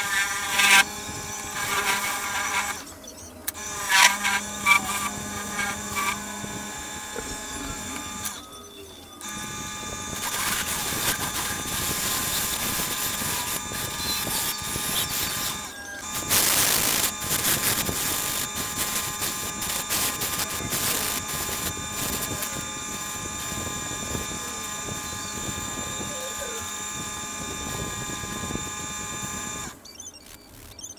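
Wood lathe running with a spinning sycamore box, a turning tool cutting into the wood. The sound breaks off briefly three times.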